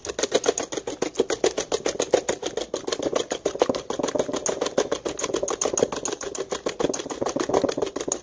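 Wire whisk beating melted butter, sugar and eggs in a stainless steel bowl: fast, even clicking of the wires against the metal bowl, many strokes a second.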